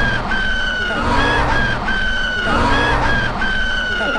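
A young man screaming in a very high pitch, three times over: each time a short cry, then a longer held scream that slowly falls, over a low rumble.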